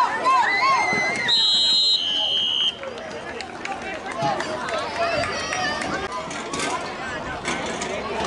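Spectators shouting during a football play, then two referee's whistle blasts back to back about a second and a half in, the second lower in pitch, blowing the play dead. Crowd chatter follows.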